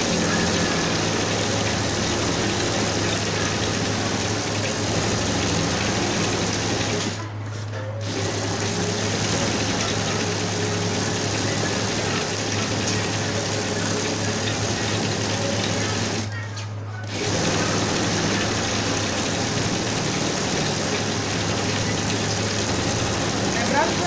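Industrial lockstitch sewing machine stitching steadily through a thick rug and knit trim, with a constant low motor hum. It stops briefly twice, about seven and about sixteen seconds in.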